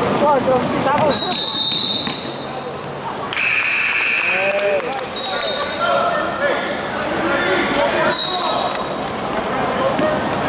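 Gym sounds of a basketball game: sneakers squeaking on the hardwood court, with several long high squeals about a second each, a basketball bouncing, and voices.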